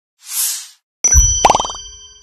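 Animated-logo sound effects: a short whoosh, then about a second in a deep hit with a bright chime that rings on and fades, and a quick rising boing-like glide.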